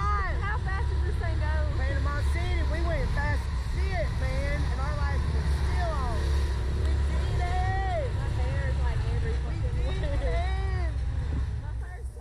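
Steady low wind rumble buffeting the microphone of the camera on a swinging Slingshot ride capsule, with the two riders' voices laughing and exclaiming over it throughout; the rumble drops away at the very end.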